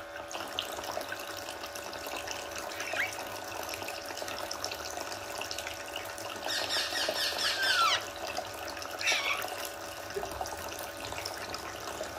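Toy sink's faucet running a thin stream of water into the basin while a green parakeet bathes and splashes in it. A few short bird chirps come through, with a louder chattering call about six and a half seconds in that lasts over a second.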